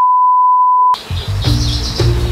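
A steady test-tone beep, a single pure tone like a TV colour-bar test signal, cuts off about a second in and gives way to background music with a beat.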